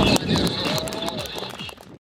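High, steady whine of the Yak-130's turbofan engines, with a voice and scattered clicks over it. It drops sharply just after the start and fades away toward the end.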